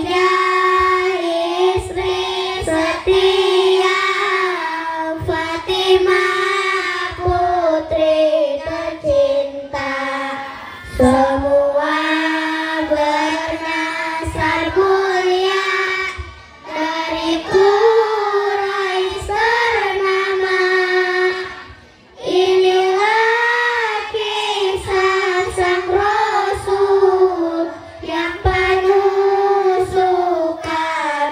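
A large group of children singing together in unison, in long held phrases with short pauses between them.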